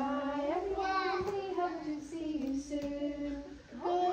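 Women and young children singing a children's song together, a simple tune of held notes with a short break near the end.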